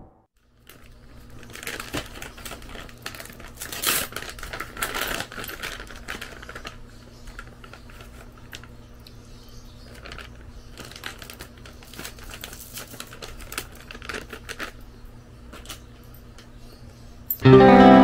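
Plastic snack pouch crinkling in the hands, sharp irregular crackles heaviest in the first few seconds and scattered after, over a steady low hum. Loud music starts abruptly near the end.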